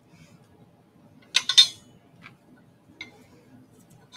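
Hands handling a pair of 6.5-inch car speakers and their metal grilles in their box. There is a short cluster of clinks and clicks about a second and a half in, then a couple of lighter ticks.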